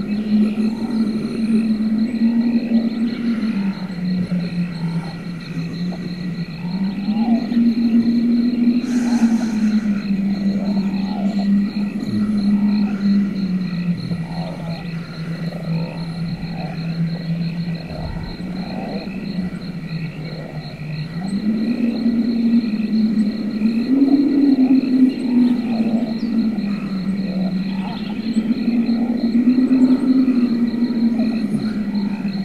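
Dark ambient drone music. A low sustained tone slowly shifts up and down between two pitches under steady high tones and a faint pulsing, growl-like texture.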